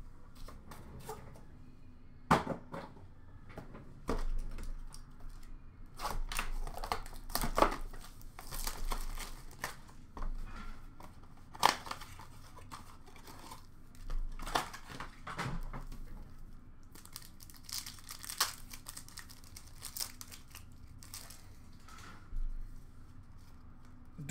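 Hockey card packs being torn open, wrappers ripping and crinkling in irregular bursts, with cardboard box handling and a few sharp clicks.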